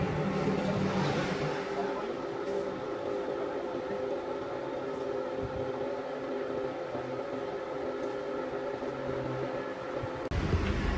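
Steady mechanical drone with constant humming tones, typical of factory machinery running.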